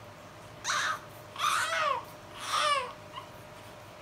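Baby vocalizing: three short, high-pitched sounds about a second apart, each sliding down in pitch at the end.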